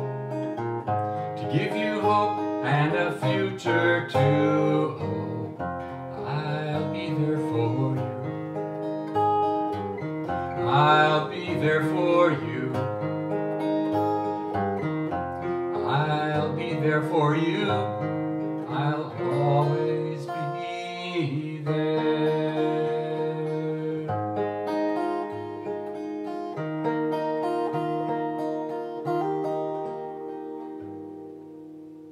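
Acoustic guitar played solo in a slow instrumental passage of plucked and strummed notes, growing quieter near the end.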